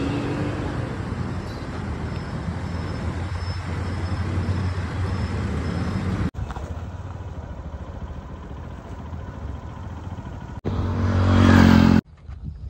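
Road traffic: vehicle engines running and passing in a steady hum, breaking off abruptly twice. Near the end one engine grows much louder as it comes close.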